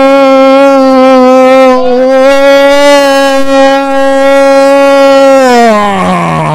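A football commentator's long, loud goal shout: the vowel of 'gol' held on one steady pitch, falling in pitch near the end.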